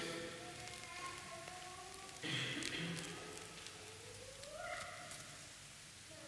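Faint crackling of a loaf of bread being torn apart by hand as it is broken for communion, heard in a quiet hall. Near the end a faint high voice rises briefly.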